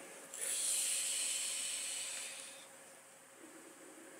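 A long draw through a pen-style e-cigarette vape: a steady airy hiss lasting about two seconds, then fading away. It is a weak hit.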